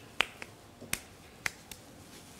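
A few sharp clicks, about five at uneven spacing, the first the loudest.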